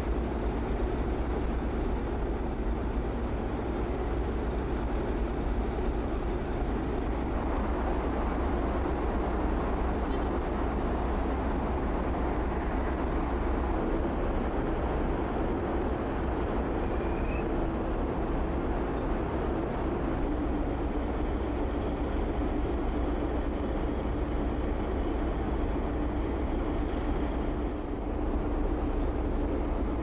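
Steady low rumble with a rushing noise over it, from a large car ferry's engines and propeller wash as it manoeuvres in harbour.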